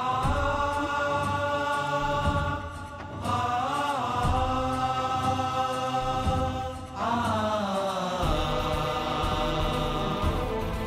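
Dramatic background score: sustained, chant-like voices held on long notes over a low accompaniment, with a new swelling phrase entering about three seconds in and again about seven seconds in.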